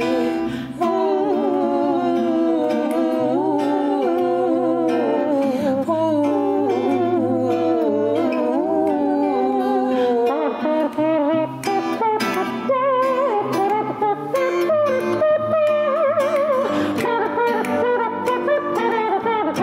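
A woman's wordless singing, a sliding, improvised vocal line without lyrics, over a strummed acoustic guitar.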